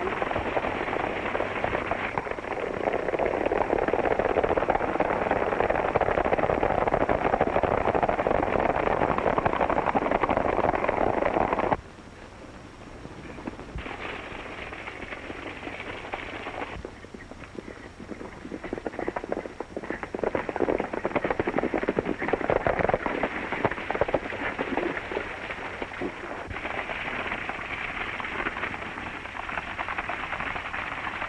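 A team of horses pulling a stagecoach at speed: a dense clatter of hooves and rattling wheels. About twelve seconds in it drops suddenly to a quieter, more uneven clatter.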